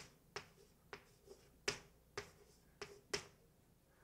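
Chalk tapping on a blackboard while writing, a string of about eight faint, sharp clicks at uneven spacing, roughly two a second.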